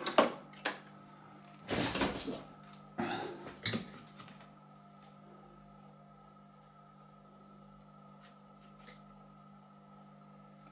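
Knocks and clatter of a soldering iron being taken up and handled among metal tools on the bench, in three bursts over the first four seconds, the loudest about two seconds in. Then only a faint steady hum, with two light ticks near the end.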